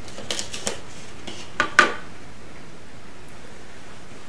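Knife cutting an aji limon chile pepper open lengthwise: a few light clicks in the first second, then two sharper knocks of the blade at about a second and a half in.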